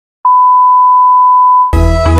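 Broadcast test tone that accompanies colour bars: a single steady, loud beep, starting about a quarter second in and cutting off sharply near the end, when music starts.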